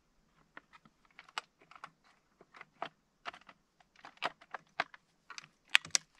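Light, irregular clicks and taps from hands working on a stopped Husqvarna 353 chainsaw, a few each second with no engine running. The loudest click comes near the end.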